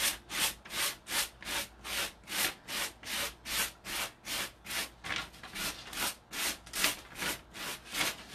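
Hand sanding block rubbing down and away over the paper-covered edge of a tabletop, sanding off the overhanging decoupage paper to trim it flush. Quick, even strokes, about two and a half a second.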